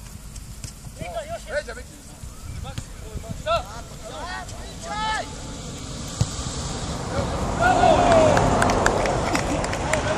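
Footballers shouting short calls to each other across an open pitch during a practice match, with the shouting and general noise growing louder in the last few seconds.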